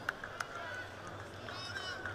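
Quiet arena ambience during a wrestling bout: a couple of sharp taps of feet on the mat early on, and a brief high squeak near the end, with faint voices in the background.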